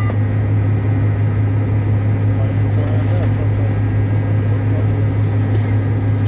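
Steady cabin drone of a McDonnell Douglas MD-88 moving on the ground after landing, its rear-mounted JT8D engines running at idle, with a deep constant hum under an even rushing noise.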